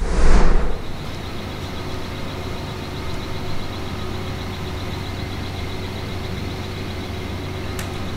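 Steady low machinery hum in a workshop, with a brief loud rushing burst in the first second.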